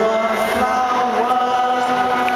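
Live band music: a long sustained chord of steady held notes, the notes shifting slightly about half a second in.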